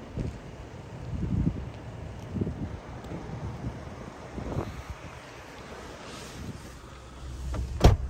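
Wind buffeting the microphone in gusts, then near the end one sharp, loud clack of a car door latch as the door is pulled open.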